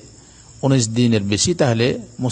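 A man lecturing in Bengali: a half-second pause, then continuous speech.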